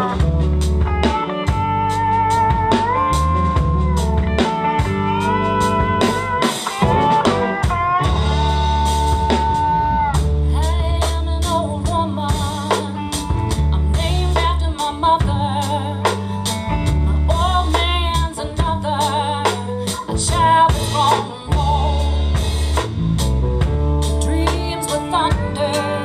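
Live blues band playing with drum kit, bass and guitar under a lead melody line that slides and wavers in pitch. A voice comes in singing near the end.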